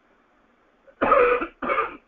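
A man coughing twice in quick succession, two short harsh bursts starting about a second in after a moment of quiet.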